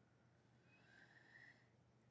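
Near silence: room tone, with a faint thin high tone for under a second near the middle.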